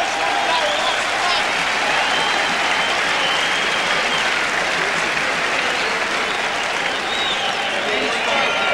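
Large arena crowd applauding and cheering steadily at the end of a kickboxing round, with voices calling out over it.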